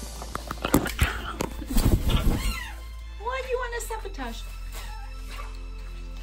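Water splashing in a kitchen sink as a hyacinth macaw bathes, a quick run of sharp splashes in the first couple of seconds, over steady background music. Some wavering voice-like sounds follow near the middle.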